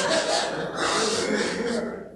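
Audience in a lecture hall laughing, a mass of mixed voices and laughter that eases off near the end.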